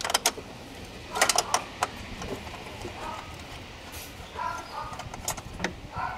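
Scattered sharp metallic clicks and clinks of a ratchet and socket extension working a fuel-rail bolt on a BMW N42 four-cylinder engine, with a quick cluster of clicks about a second in and single ones later.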